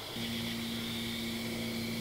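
Crickets chirping steadily in the night, joined just after the start by a low, steady hum that holds one pitch with overtones.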